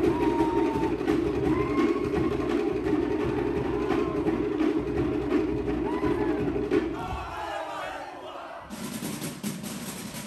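Group performance music with percussion strikes and voices calling out over a dense steady chant. It fades about seven seconds in, and a brighter new section starts sharply near the end.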